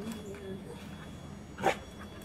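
A dog gives a single short, sharp yip about one and a half seconds in, as it jumps up at its handler.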